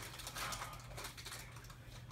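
Faint rustling and light clicks of saltine crackers being handled in the hands, over a low room hum.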